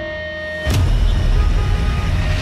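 Busy street traffic of motor scooters and auto-rickshaws running under background music with held notes, with one sharp hit a little under a second in, after which it gets louder.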